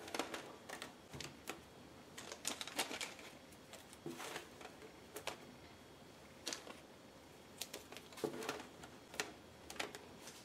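Rubber bands being stretched and snapped around a bundled damp cotton shirt, with rustling from a plastic zip bag of bands: irregular sharp snaps and clicks, about a dozen.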